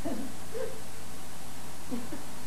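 Steady background hiss with a low electrical hum, typical of an old broadcast tape recording, between bursts of talk.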